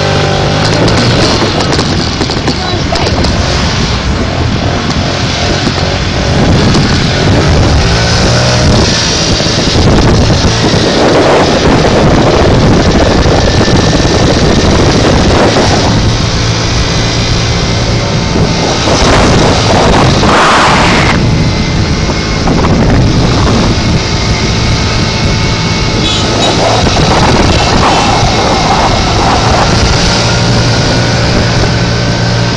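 Small moped engine running while riding, with a steady low hum and loud wind rushing over the microphone. Its pitch rises in the first few seconds as it speeds up.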